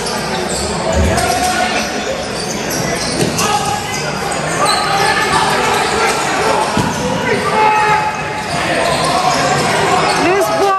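Sounds of a box lacrosse game echoing in an arena: players' and spectators' voices, with knocks of the ball and sticks on the floor and boards.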